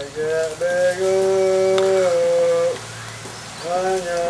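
A person's voice holding long, drawn-out notes that bend in pitch at their ends, as in singing, with a steady hiss underneath.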